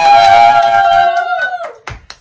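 A high voice holding one long, steady 'woo' cheer that breaks off about a second and a half in, followed by a single sharp hand clap near the end.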